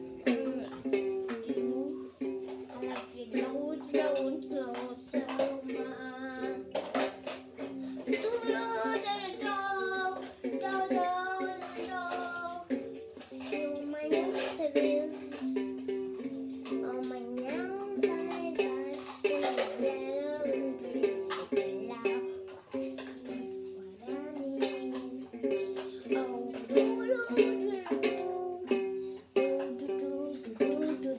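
A child singing along to a strummed string instrument, its chords steady, with the voice most prominent about eight to thirteen seconds in.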